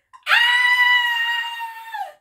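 A woman's high-pitched excited scream, held on one steady pitch for nearly two seconds and dipping as it trails off.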